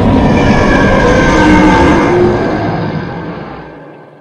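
Loud movie-trailer sound design: a dense, rumbling wall of noise with a few sustained musical tones over it, fading away over the last second and a half.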